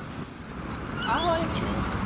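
A glass entrance door squeaking as it opens: a few thin high squeaks in the first half second, then a short wavering squeal about a second in, over a low steady hum of street noise.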